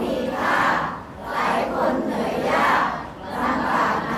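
A large crowd of voices chanting together in unison, in regular swells about a second apart with short dips between them.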